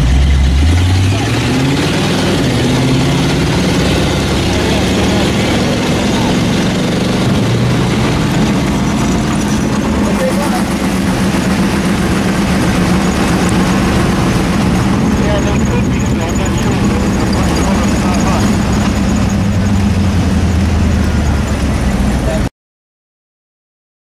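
Engines heard from inside a push truck as it push-starts a sprint car: the engine pitch climbs over the first couple of seconds, then holds fairly steady while the started sprint car runs ahead.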